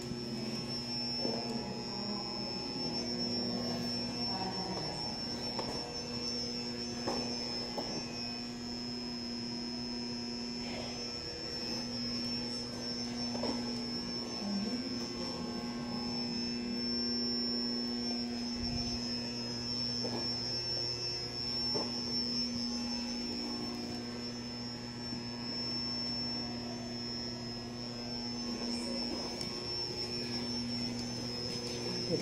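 A steady hum with a thin high whine above it, the lower hum dropping out briefly a few times, with a few faint clicks.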